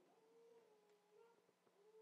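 Near silence: room tone, with a very faint thin held tone.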